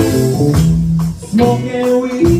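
Rock band playing a song: electric guitars over bass guitar notes, with a steady beat from an electric drum kit.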